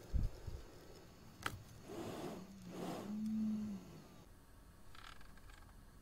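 Small electric motor of a HVAC blend door actuator running for about two seconds as a low steady whine that steps up slightly in pitch and then stops. A sharp click comes shortly before it, and a soft thump near the start.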